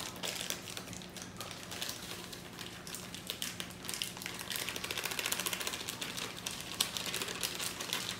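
A foil packet of matzo ball mix crinkling and crackling continuously as it is opened and its dry mix shaken out into a plastic bowl, over a faint steady low hum.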